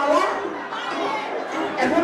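A man's voice over a microphone and PA at the start and again near the end, with crowd chatter in between.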